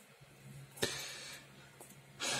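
A pen tip tapping down on sketch paper about a second in, then a short scratchy stroke across the paper that fades out, over a faint steady hum.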